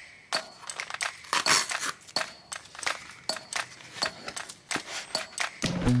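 Cardboard box and black plastic filter case being handled and opened: a run of clicks, taps and papery rustles of the packaging.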